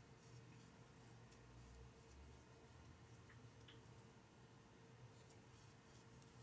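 Near silence: faint, brief rustles of a crochet hook drawing cotton yarn through stitches, over a low steady hum.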